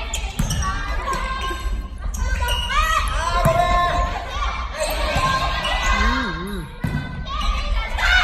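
Volleyball rally: several sharp hits of the ball off hands and forearms and off the wooden floor, with players' shouts and calls ringing through a large gym.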